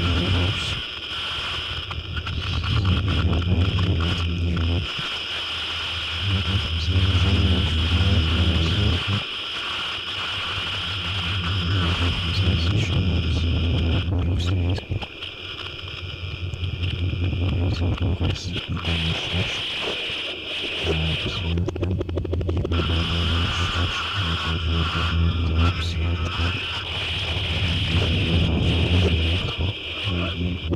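Experimental musique concrète built from several tracks layered on tape, with no samples or effects. A dense texture of a steady high band over a low pulsing drone, with voice-like sounds mixed in, thinning out briefly a few times.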